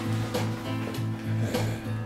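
Backing track playing: a low bass note repeats evenly about four times a second under held, sustained tones.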